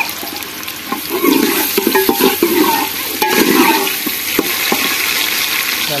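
Chopped onion, tomato and green chilli sizzling in hot ghee in an aluminium pot, stirred with a steel ladle that scrapes around the pot, with a few sharp knocks of the ladle against the metal.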